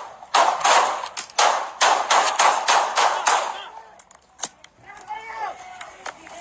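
Rapid string of handgun shots picked up by a police body-worn camera, about three or four a second for roughly three and a half seconds, each with a short echo. The firing stops, and a single sharp click follows about a second later.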